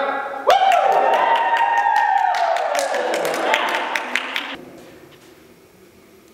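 A small group cheering and clapping, with a long whoop that slides down in pitch, all fading out after about four seconds.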